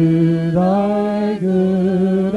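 Slow singing in long held notes, the pitch stepping from one note to the next about once a second, like a hymn or chant.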